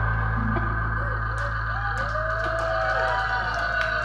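Electric bass and guitar ringing out through the amplifiers after the band's final hit: a steady low bass note with sustained guitar tones, slowly fading. Several short rising-and-falling whistles and a few sharp claps sound over it.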